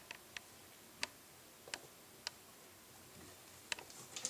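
A chinchilla on a wooden shelf unit making a few faint, sharp clicks, about six spread irregularly over four seconds.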